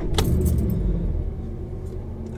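A VW Golf R's turbocharged four-cylinder engine starting, heard from inside the cabin: a click as the starter engages, then the engine catches with a low rumble that is strongest in the first second and eases off slightly as it settles toward idle.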